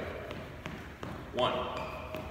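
Shoe footfalls on a hardwood gym floor from a man running in place, about three steps a second. A man's voice counts "one" partway through.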